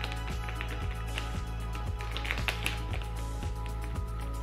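Background music with a steady beat and sustained chords.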